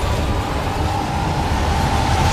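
Loud mechanical rumbling and rushing, like a heavy rail vehicle or lift moving fast, with one steady shrill tone held across it.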